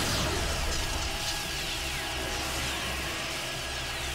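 Cartoon sound effects of an electric energy blast: dense crackling, zapping noise with repeated falling whistling sweeps over a steady low rumble.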